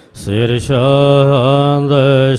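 A man chanting a Gurbani verse of the Hukamnama in a slow, drawn-out melodic recitation. His voice comes back in just after a brief pause, with a couple of sharp 's'-like consonants, then holds long wavering notes.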